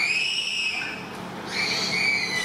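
A child in the crowd yelling in a long, high-pitched shout that falls slightly in pitch, followed by a second shout starting near the end.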